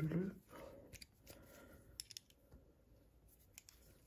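Metal dart re-pointer tool being loosened with an Allen key: faint metallic clicks and scraping, with a few sharp ticks around two seconds in.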